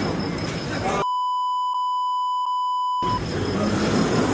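A steady, pure electronic beep near 1 kHz lasting about two seconds, starting about a second in. It completely replaces the surrounding street commotion and voices, the way a broadcaster's censor bleep covers swearing. Noisy outdoor commotion with voices runs before and after it.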